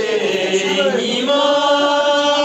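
A voice singing in a slow, chant-like style: the melody moves through the first second, then settles into one long held note.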